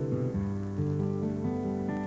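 Live rock music: an acoustic guitar strumming chords over a low bass line, the opening of a song.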